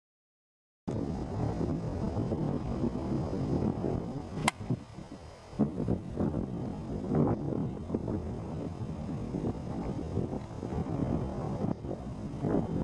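A golf club striking the ball on a tee shot: one sharp click about four and a half seconds in. Around it is a steady low rumble of outdoor background noise, starting about a second in.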